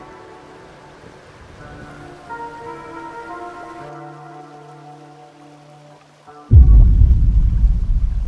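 Soft, slow film-score music with held notes, then, about six and a half seconds in, a sudden loud rush of water noise, heavy in the low end, that swamps the music.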